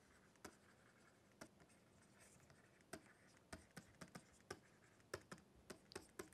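Near silence with faint, irregular ticks of a stylus tapping and sliding on a tablet screen as a word is handwritten.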